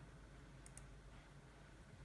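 A single faint computer mouse click, heard as two quick ticks close together, against near-silent room tone.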